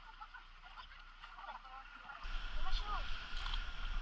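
Quiet river ambience with faint, distant voices calling in short snatches. About halfway through, a low rumble and a wash of water noise come in and it grows louder.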